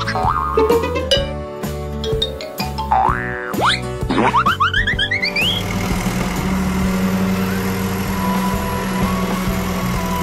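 Cartoon music for children with boing-like sound effects: bouncy notes and several sliding swoops up and down in the first half. From about halfway a steady machine hum joins the music as the animated road milling machine starts up and drives off.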